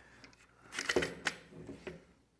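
Aluminium bar clamp with a wooden extension bar being handled on a wooden workbench: a quick cluster of metallic clinks and knocks about a second in.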